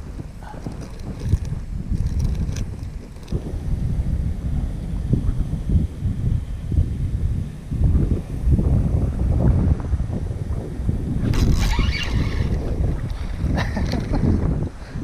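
Gusty wind buffeting the microphone, rising and falling throughout, with a brief higher-pitched rasping burst about eleven seconds in.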